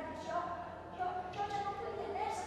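A woman speaking, delivering lines of a spoken performance.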